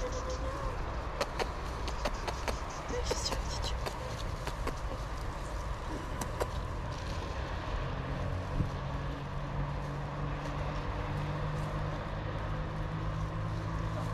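Wind rumbling on the microphone outdoors, with scattered clicks in the first few seconds. From about six seconds in there is a low, steady engine hum from a distant vehicle.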